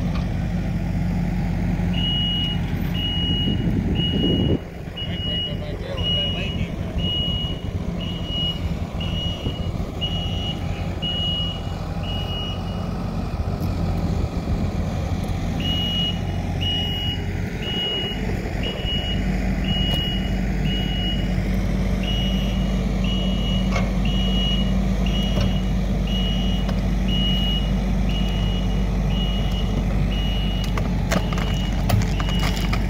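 Kubota SVL90 compact track loader's four-cylinder diesel engine running, its low hum dipping about four seconds in and picking up again near the middle. Its backup alarm beeps about once a second while the machine reverses, with a break of a few seconds midway.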